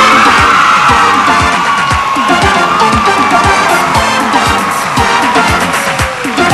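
Upbeat 1980s pop song with a steady drum beat, with an audience cheering over the music as it starts.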